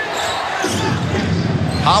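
A basketball game in play in an arena: steady crowd noise with on-court game sounds, and a TV commentator's voice coming in near the end.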